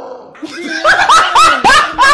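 A woman's loud, high-pitched shrieking laughter in rapid bursts, starting about half a second in.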